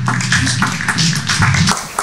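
A small group of people clapping briefly, the claps stopping shortly before the end.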